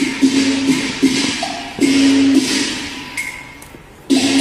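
Cantonese opera instrumental accompaniment: a melodic instrument holding long notes in short phrases over percussion. The music dies down over the last second or so.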